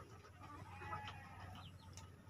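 Chickens clucking faintly, loudest about a second in.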